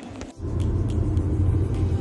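Low, steady rumble of a moving car heard inside its cabin. It starts abruptly and loud about half a second in.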